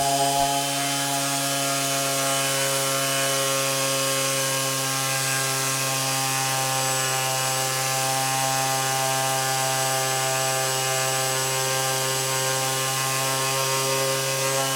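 Electric random orbital sander running steadily with an even motor hum, its pad sanding the edge of a wooden box.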